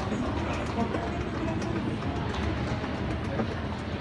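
Escalator running: a steady mechanical rumble from the moving steps and drive, with faint voices in the background.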